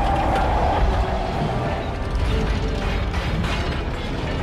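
Film sound effects of a giant armored alien creature, a Chitauri Leviathan, crashing down: grinding, creaking metal with rattling clicks over a low rumble. A brief high screech comes in the first second.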